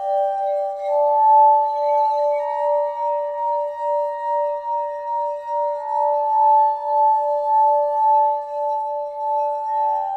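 Crystal singing bowls ringing together in sustained, overlapping tones, the lowest one pulsing about twice a second. A higher bowl tone joins about a second in.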